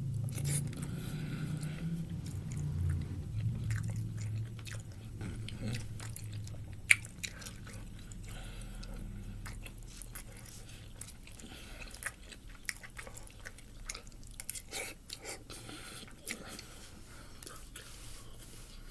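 A person chewing and biting a noodle-and-meat dish close to the microphone, with scattered clicks of a plastic fork against a paper plate; one sharper click about seven seconds in.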